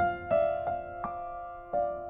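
Soft background piano music: a slow, gentle melody of single notes struck one after another, each ringing on.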